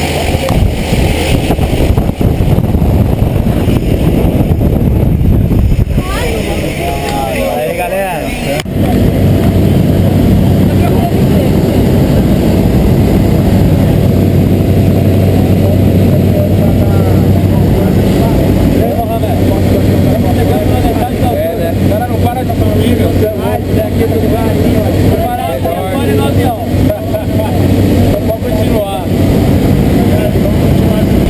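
Engine and propeller noise of a single-engine high-wing light aircraft, heard inside the cabin during the climb: a loud, steady drone with a low hum. The sound changes suddenly about nine seconds in and then holds steady, with voices faintly under it.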